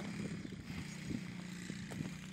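A car engine idling steadily, a low even hum, with scattered light ticks and crunches over it.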